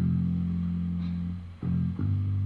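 Bass line of a dance track played on its own: deep, long, heavy notes, each held for over a second, with a new note starting about one and a half seconds in.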